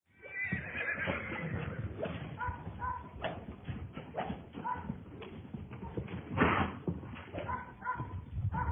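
A horse's hooves thudding irregularly on the dirt of a round pen as it moves around on a lunge line. Short high chirps come several times, and a louder rush of noise about six and a half seconds in.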